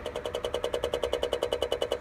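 A weird, rapid buzzing from the front of a parked Nissan with its engine off: even pulses about twenty times a second.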